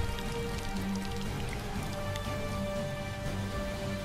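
Steady rain falling on leaves and soil, mixed with background music of long held notes.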